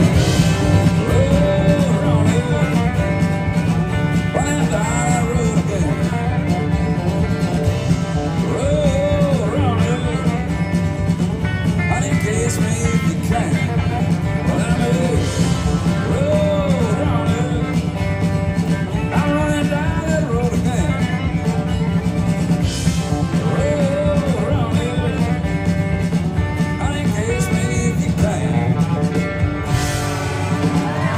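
Live country band playing an instrumental passage: acoustic and electric guitars, bass and drums, with a lead line of bending notes over the steady rhythm.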